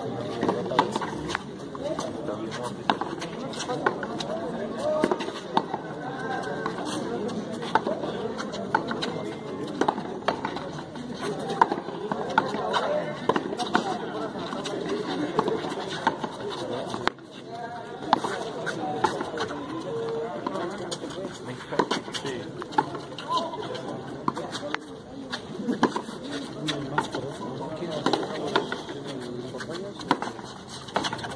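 Sharp cracks of a hard frontón ball (pelota dura) hit by gloved hands and striking the concrete wall, coming at irregular intervals through a rally, over the steady chatter of spectators' voices.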